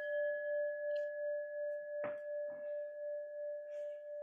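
A singing bowl struck once and left to ring: one steady tone with a fainter higher overtone, gently pulsing in loudness as it slowly fades, rung to call the class back together. A short faint knock sounds about two seconds in.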